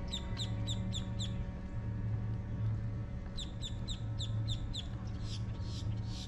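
A songbird sings two short phrases, each of about six quick, high, repeated notes at roughly four a second; the second phrase comes about three seconds in. A steady low rumble runs underneath.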